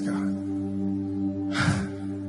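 A soft chord held steady by the band's keyboard under the prayer, with a short breath drawn in close to a microphone about a second and a half in.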